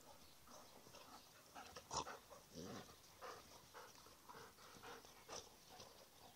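Faint dog sounds from two dogs play-fighting: a run of short huffs and panting noises, with one sharp click about two seconds in.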